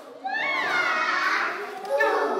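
Young children's voices calling out in a classroom, with a high voice rising and falling about half a second in.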